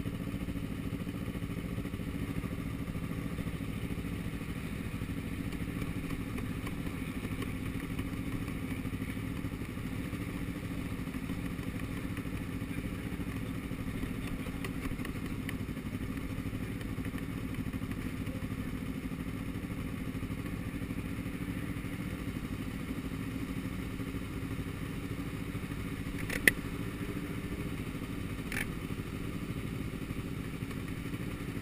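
Motorcycle engines idling steadily. A sharp click sounds near the end, with a fainter one about two seconds later.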